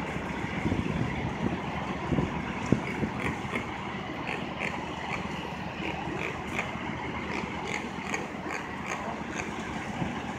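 Steady city street noise with a low vehicle engine rumble, and faint short high chirps scattered throughout.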